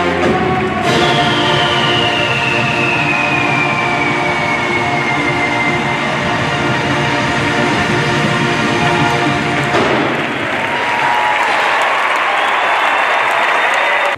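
A large marching band holds a loud final chord, with a long whistle sliding down in pitch over the first few seconds; about ten seconds in the chord ends and an arena crowd applauds and cheers, until the sound cuts off abruptly.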